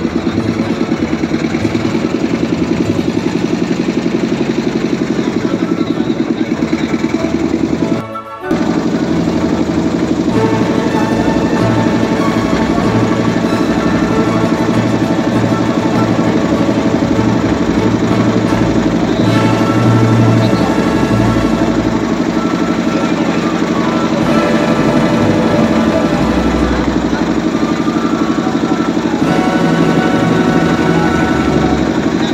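Background music over the steady running of a boat's engine, with a brief dip in sound about eight seconds in.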